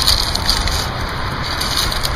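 Dry leaves and pine needles crackling and crunching as a tinder bundle is rolled up tightly in the hands, over a steady low rumble.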